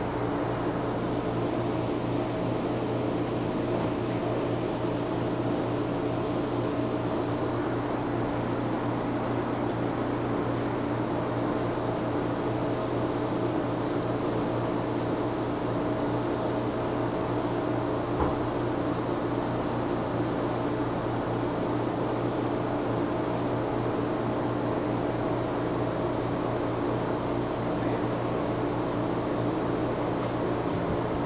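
Steady mechanical hum with a hiss over it, with a single faint tick about eighteen seconds in.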